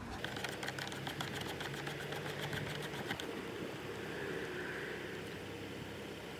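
Steady mechanical running sound with a fast, even ticking and a low hum, from a machine running in the background.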